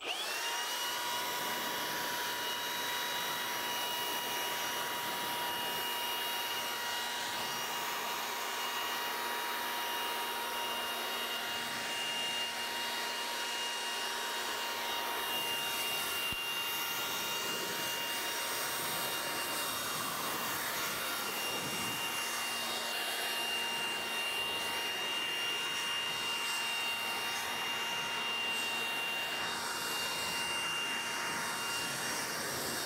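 Handheld electric car-drying blower switching on and running steadily with a high whine, blowing rinse water off the car's paint.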